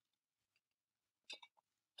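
Mostly near silence, broken by one short gulp from a person swallowing a drink from a glass, about a second and a quarter in.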